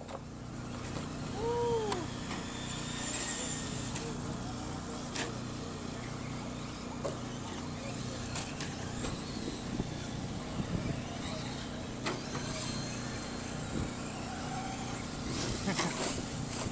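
Electric 1/10-scale RC short-course trucks running laps on a dirt track: faint high motor whines that rise and fall with the throttle over a steady low hum, with a few light clicks.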